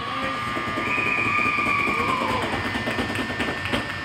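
Ice-rink horn sounding a long, steady tone that signals the end of the game, with spectators shouting over it.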